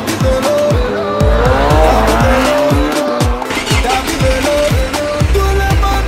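Afro-pop dance track with a kick drum about twice a second. Over it, a sport motorcycle engine revs up and down in pitch between about one and three seconds in.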